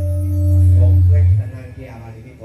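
Live accompaniment music for a traditional dance ending on a long held low note, which stops about a second and a half in, leaving quieter voices.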